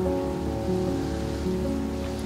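Soft piano music with held notes, over a steady hiss of rain.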